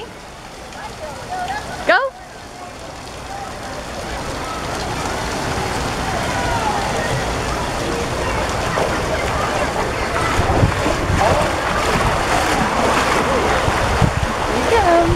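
Running and splashing water from a water-park play structure and slide, building steadily louder, with faint distant children's voices over it.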